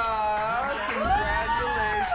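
A few people clapping and cheering, with long whoops that glide up and down.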